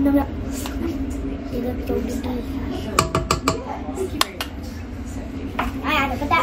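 Kitchen utensils clinking against a metal mixing bowl, with a quick cluster of sharp clinks about three seconds in, over a steady low hum.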